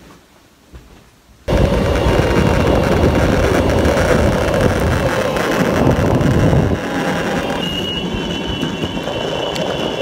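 Boosted Board electric skateboard rolling over asphalt: a steady rumble of wheels on the road that starts suddenly about a second and a half in. It eases slightly later on, when a thin high whine joins in.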